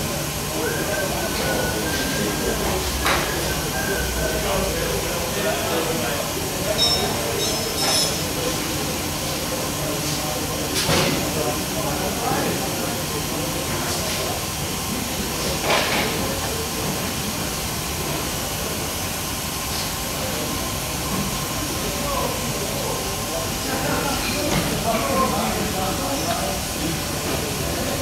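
Steady hiss and hum of running process equipment, with faint voices in the background and a few short clicks of handling.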